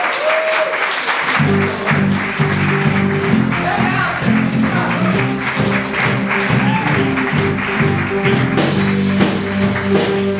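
Audience applause, with music coming in just over a second in and carrying on under the clapping, built on steady low notes.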